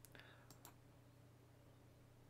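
Near silence with a few faint computer mouse clicks in the first second, as a word is selected on screen.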